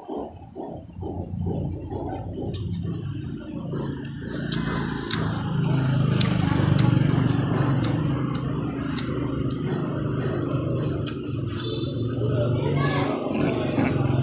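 A motor starts running nearby about four seconds in and keeps going as a steady low hum, over background voices and a few light clicks.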